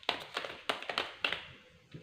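A deck of tarot cards being shuffled by hand: a quick, irregular run of sharp card slaps and taps.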